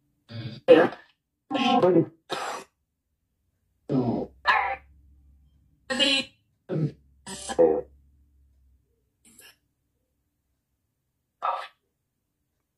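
A man clearing his throat and coughing in a string of short, separate bursts over the first eight seconds, with one more brief burst near the end.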